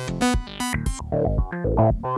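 Eurorack modular synth playing a sequenced bass line of short, plucky notes at several pitches over a kick drum, several notes a second. The filter resonance is turned up, which gives some notes a brighter, ringing edge.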